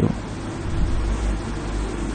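Steady low hum with a faint hiss, unchanging throughout: background noise picked up by the microphone.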